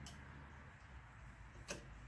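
Near silence: low room tone, with a single short click near the end.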